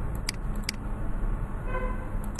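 Steady low background noise with two sharp mouse clicks about half a second apart, and a short flat hum near the end.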